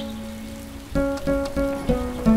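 Plucked lyre strings in a slow instrumental piece: one note rings and fades, then four notes are plucked in quick succession, about a third of a second apart.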